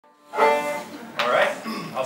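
A single plucked chord on a five-string banjo, struck once and ringing out briefly before fading, followed by a short spoken remark from a band member.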